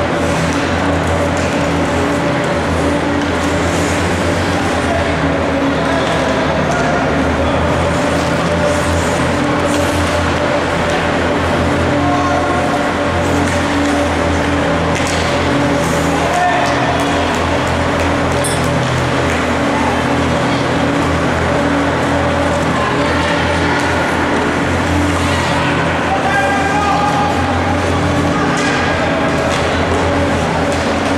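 Indoor ice rink ambience: a steady low hum, with voices of players and spectators over it.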